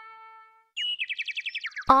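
A held musical note fades out in the first half-second. After a brief gap, a rapid high-pitched trill of about ten chirps a second runs for about a second, dropping in pitch near its end. A narrator's voice starts just as the trill ends.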